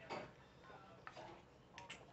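Near silence broken by faint drink sounds from a foam cup and straw: a short sucking noise at the start, then a sharp tick about a second in and a couple of faint squeaks near the end.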